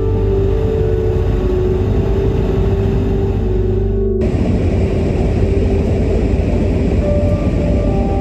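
Car driving along a highway: steady road and engine rumble that changes abruptly about four seconds in to the louder, hissier road noise heard inside the cabin. Soft background music sits underneath.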